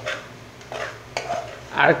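Metal spoon stirring karela and potato bhaji in a black pan, with two short knocks of the spoon against the pan; a man's voice starts near the end.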